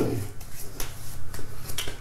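Hands rubbing and patting aftershave balm onto the face and beard stubble: an irregular run of soft pats and skin-rubbing sounds.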